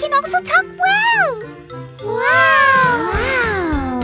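Wordless cartoon baby voices: short exclamations, a rising-and-falling 'ooh' about a second in, then longer wavering cries from about two seconds in, over light background music.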